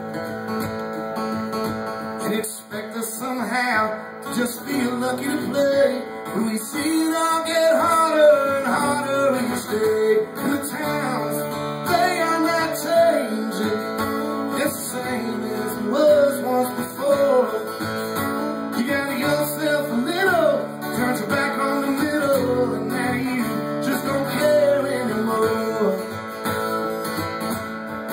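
Live acoustic guitar strummed steadily through an instrumental break in a folk-rock song, with a bending lead melody line playing over the chords.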